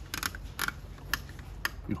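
A few separate sharp mechanical clicks, about five spread over two seconds, from a Juki LU-2860-7 industrial walking-foot sewing machine as its presser-foot controls are worked, over a low steady hum.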